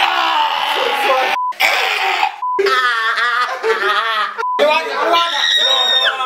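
Two young men yelling, groaning and gasping in pain from the burn of hot peppers they have just eaten. The cries are cut three times by short, steady censor bleeps.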